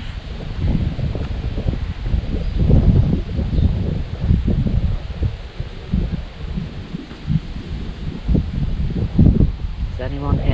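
Wind buffeting the microphone in uneven gusts, with leaves rustling in the trees.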